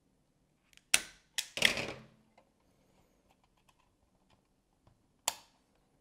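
Knipex wire-stripping tool clicking as it closes on a thin hookup wire: a sharp snap about a second in, a second snap followed by a short rasp, and another snap near the end, with faint small handling ticks between.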